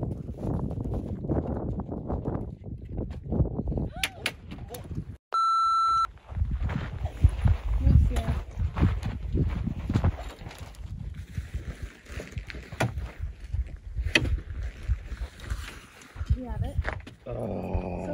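Gusty wind buffeting the microphone under indistinct talk, with a short steady electronic beep about five seconds in.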